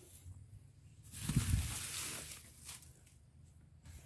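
A rustling hiss for about a second and a half, starting about a second in.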